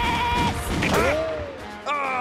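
A cartoon voice, Mr. Krabs, holding a long high yell at a steady pitch that cuts off about half a second in, then a short cry that swoops up and falls away, over a cartoon music bed.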